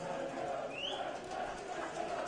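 Open-air football stadium background: a low, steady murmur from the pitch and the small crowd, with one short, high rising chirp a little under a second in.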